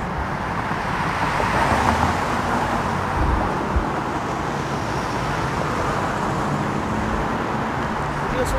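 City street traffic: cars driving through an intersection, a steady wash of engine and tyre noise that swells briefly about two seconds in.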